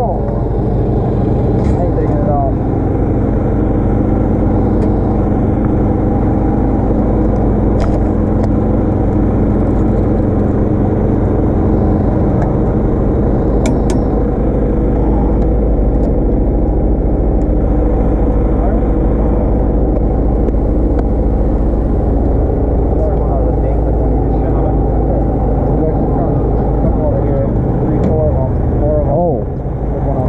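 A small engine on the bowfishing boat running steadily at an unchanging speed, with a few sharp clicks now and then.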